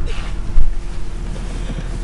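A low, even rumble of wind-like noise on the microphone, with one loud low thump about half a second in.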